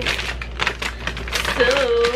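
Plastic mailer bag crinkling and rustling as it is handled, a dense run of small crackles.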